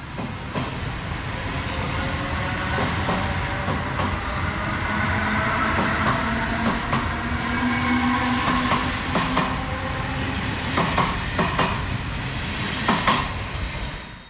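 NS ICM 'Koploper' electric intercity train running past along a station platform: a steady rumble of wheels on rail with a whine that slowly rises and falls, and a few sharp clicks of wheels over rail joints near the end.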